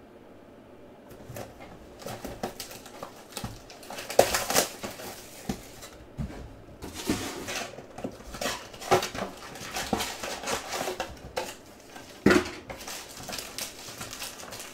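Crinkling, rustling and tapping of a cardboard trading-card box and foil card packs being handled and opened, in irregular bursts from about a second in, with sharp knocks about four seconds in and near the end.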